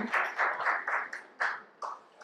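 Audience applause in a hall, fading away and stopping shortly before the next speaker begins.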